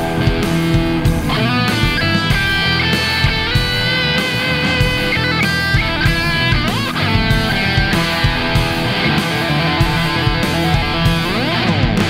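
Electric guitar played through a Taurus Servo 2 sustain and compression pedal, engaged with boost, servo gain and the Massive switch on. It plays sustained, ringing lead lines with pitch slides about seven seconds in and again near the end, over a steady beat.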